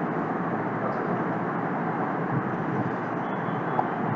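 Steady background noise, a constant even hiss with no distinct events.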